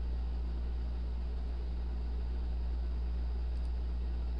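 Steady low electrical hum with a faint even hiss, unchanging throughout: the background noise of the desktop microphone setup.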